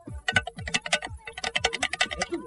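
A rapid, irregular run of sharp clicks and taps, with soft low thuds among them, played as a mystery sound whose source is left for listeners to guess.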